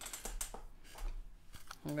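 A few light clicks and taps of makeup items being handled: a brush and a pressed-powder compact picked up from the table.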